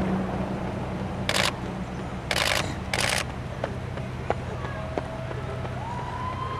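Outdoor street ambience with a steady low engine hum and four short hissing noise bursts in the middle, plus a few faint clicks. Near the end a siren starts, rising in pitch and then holding.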